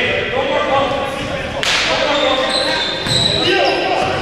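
A basketball being dribbled on a hardwood gym floor, with players' voices, echoing in the large hall.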